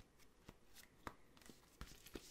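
Faint crinkling of a clear plastic sticker pouch being handled, with a few short, sharp crackles spread through the moment.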